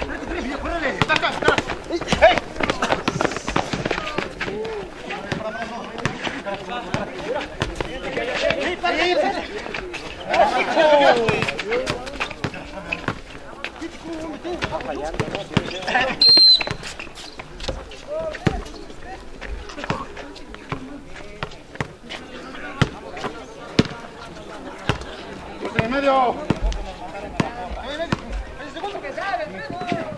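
Outdoor basketball game on a concrete court: players and onlookers calling out, with the ball bouncing and footfalls as sharp knocks scattered throughout.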